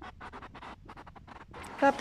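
Soft, irregular scratching and rustling noises, then a woman starts speaking near the end.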